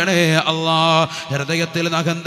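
A man chanting a dua (Islamic supplication) into a microphone, in long held notes that waver and slide in pitch, with brief breaks between phrases.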